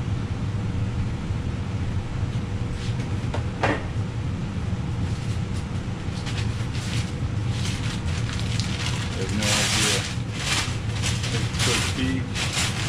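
Objects being handled, with a few knocks, then about nine and a half seconds in a loud crinkling rustle of packing paper and more short rustles as a paper-wrapped piece is lifted out. A steady low hum runs underneath.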